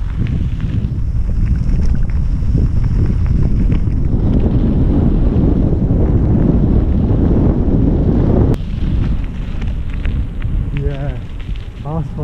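Heavy wind rush buffeting the microphone of a fast-moving camera. It cuts off suddenly about two-thirds of the way through, and brief voices follow near the end.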